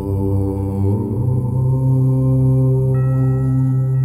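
Deep, low voice chanting a long, held 'Om', a fresh chant beginning about a second in, over meditation music with singing-bowl tones.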